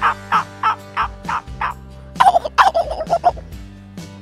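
A man imitating a wild turkey with his voice through cupped hands. He gives a string of short calls, about three a second, then about two seconds in a louder, rapid rolling call that falls in pitch, like a gobble.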